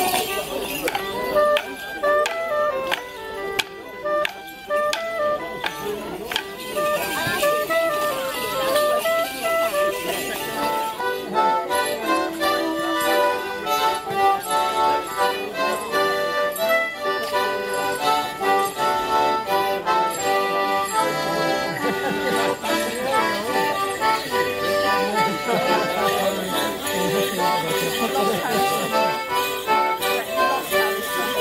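Traditional English folk dance tune played on accordion to accompany Morris dancing, with sharp clicks cutting through in the first few seconds. The music changes abruptly to another, busier tune about eleven seconds in.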